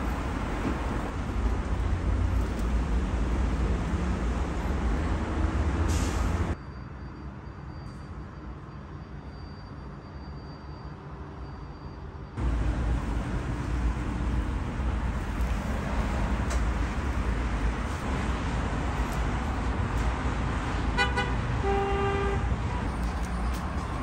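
Steady low rumble of road traffic, dropping for about six seconds in the middle to a much quieter hum with a faint high whine, then coming back. About two to three seconds before the end, a short pitched horn toot sounds.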